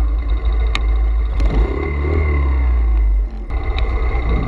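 Single-cylinder 125cc pit bike engine running hard through a corner, its note dropping in the second half, under heavy wind rumble on the onboard camera microphone. The sound breaks off abruptly a little over three seconds in.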